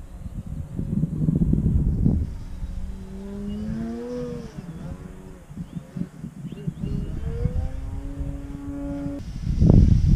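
Wind buffeting the microphone, with a model plane's motor and propeller whining at a pitch that rises and falls with the throttle, holding steady before cutting off sharply about nine seconds in. A loud rush of noise comes near the end.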